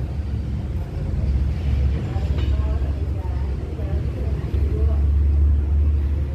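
Low, steady rumble of a running vehicle engine, louder over the last second and a half, with faint voices underneath.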